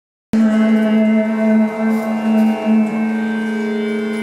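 Hindustani classical music in raag Bairagi Bhairav from a female vocalist with harmonium accompaniment: long, steady held notes with a few changes of note. It starts abruptly a moment in.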